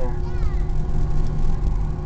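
Cabin noise of an Airbus A320 taxiing: a steady low rumble from the idling jet engines, with a few steady hum tones above it.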